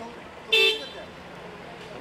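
A single short car horn beep about half a second in, over a low murmur of street noise and voices.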